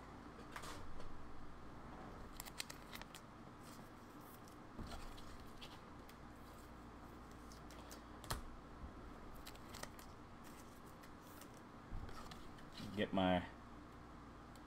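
Faint, irregular clicks and rustles of trading cards and plastic card holders being handled on a desk, with a brief mumble of a man's voice near the end.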